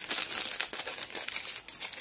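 Thin clear plastic sleeve crinkling as fingers pull it open around a stack of cards: a dense run of small rustles and crackles.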